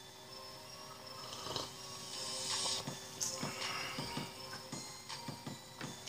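A man drinking from a tall can, with faint background music running underneath.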